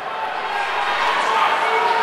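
Crowd of spectators cheering and shouting in an indoor track fieldhouse as runners kick for the finish, slowly growing louder.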